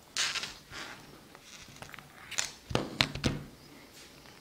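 Handling of a small cotton zip wallet on a table: short rustles of the fabric, then a few sharp light clicks about three seconds in, such as its metal zipper pull and strap clasp tapping.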